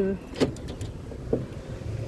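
Vehicle door clicking open about half a second in, then a fainter knock as someone climbs out, over a low rumble of street traffic.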